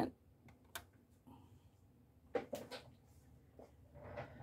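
Faint handling noises with quiet room tone between: a single light click just under a second in, then a short cluster of clicks and soft knocks around two and a half seconds in.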